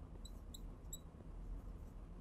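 Marker squeaking on a glass lightboard as letters are written: three short, high squeaks within the first second, over a faint low room hum.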